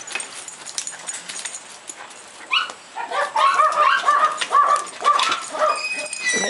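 Small dog whining, in a quick run of short, high squealing whimpers that rise and fall, starting about halfway through. Before that there are only a few scattered clicks and rattles.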